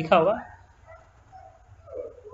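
A short, high-pitched, yelp-like cry that sweeps quickly up and down in pitch just after a spoken word. Faint thin whining tones follow for about a second and a half.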